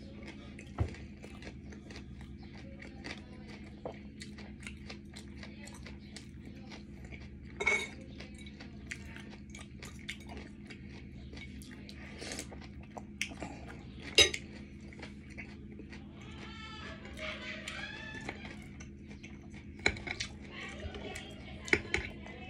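Spoon and fork clinking against a bowl and plate during eating: a few sharp, separate clinks spread out, the loudest about fourteen seconds in, over a steady low hum.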